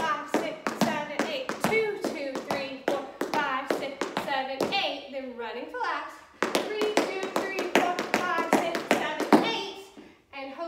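Metal taps on tap shoes striking a hard studio floor in quick, rhythmic runs of several strikes a second as a push step is danced, with a woman's voice calling the rhythm over them. The taps break off for about a second and a half near the middle, then pick up again.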